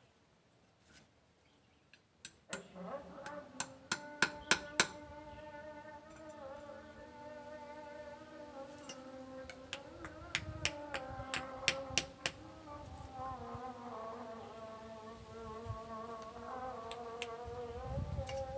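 Hand hammer striking metal on a small anvil, in two runs of quick blows, over a steady, slightly wavering buzzing tone.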